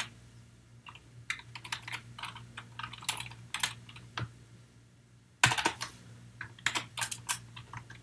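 Typing on a computer keyboard: scattered keystrokes, a pause of about a second just past the middle, then a quicker run of keys.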